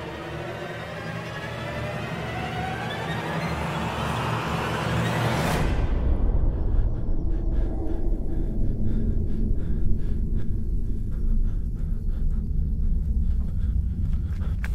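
Suspenseful film score: a swell of many climbing tones builds in loudness for about five and a half seconds, then breaks abruptly into a deep rumbling drone with scattered clicks.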